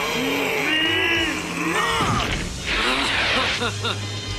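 Strained grunts and cries of two men fighting over dramatic background music. A noisy whoosh-like sound effect follows about three seconds in.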